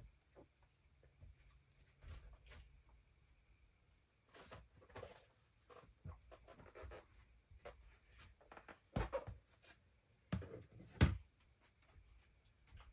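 Plastic tubs and a shoebox tray being handled: scattered light knocks, scrapes and rustles, with the loudest knocks near the end as the tray is set down inside a clear plastic storage tub.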